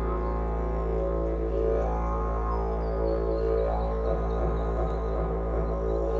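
Wooden didgeridoo playing a continuous low drone. Its overtones sweep up and down as the player reshapes his mouth.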